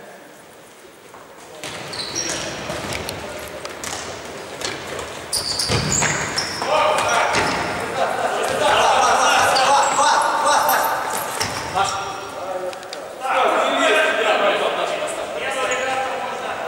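Futsal being played on an indoor hall court: players shouting and calling out, over the knocks of the ball being kicked and bouncing on the floor, with the hall's echo.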